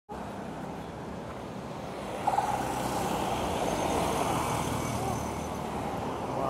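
Road traffic driving past close by: cars and motorcycles, with engine and tyre noise that swells about two seconds in. A short sharp blip comes right at the start of the swell.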